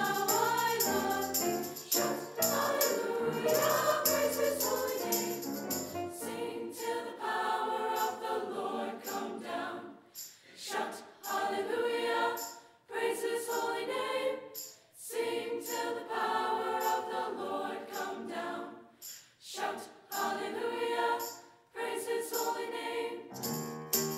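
Mixed choir of young voices singing a sacred song in harmony, the phrases broken by short pauses from about ten seconds in.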